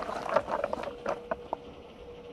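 Rustling and a quick run of light clicks from small objects being handled by hand, dying away about a second and a half in. A faint steady hum runs underneath.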